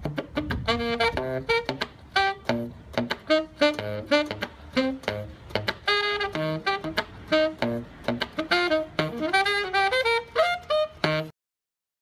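Instrumental background music: a lead melody over a beat. It cuts off abruptly about a second before the end, leaving silence.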